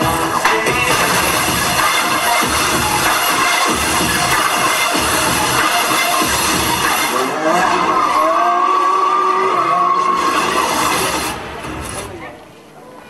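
Electronic dance-mix music, loud and dense, with curving pitch glides in its second half; the level drops shortly before the end.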